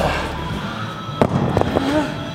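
Pair of hex dumbbells dropped onto a rubber gym floor a little after a second in: one sharp thud followed by a few smaller knocks as they settle. Backing music plays underneath, its heavy bass stopping about half a second in.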